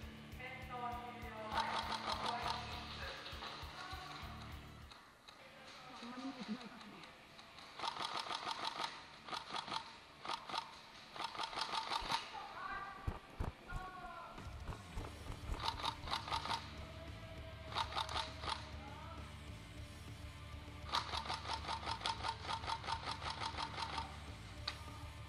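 Electric airsoft guns firing bursts of rapid full-auto shots, several bursts of one to three seconds each, over background music.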